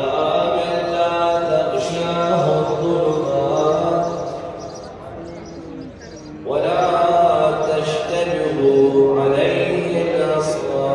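A man's voice in melodic religious chanting, with long held, ornamented notes. It eases off about five seconds in and returns with a rising phrase a second and a half later.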